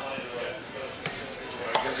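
Light knocks of a small glass tasting glass being set down on a wooden beer-flight board, over quiet background music.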